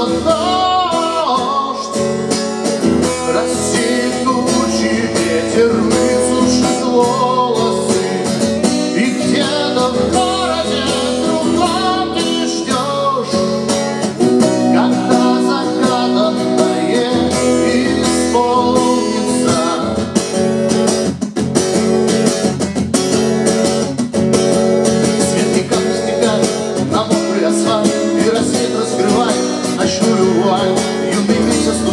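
A man singing a slow love song to his own strummed acoustic guitar.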